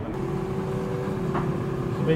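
A steady mechanical hum: a low drone with one held tone.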